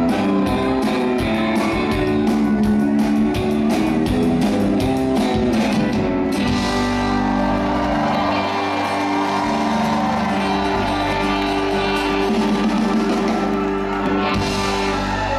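Live country band with electric and acoustic guitars, pedal steel, keyboard, bass and drums playing the end of a song: a steady drum beat stops about six seconds in, and the band holds a long closing chord.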